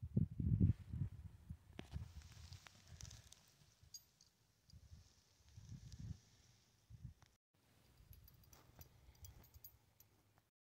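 Irregular low, muffled bumps and rumbles of a handheld camera microphone being moved about close to the ground, with a faint hiss, and the sound briefly cutting out about seven seconds in.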